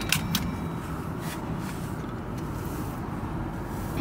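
Steady low road and engine rumble inside a moving car's cabin, with a couple of light clicks at the start.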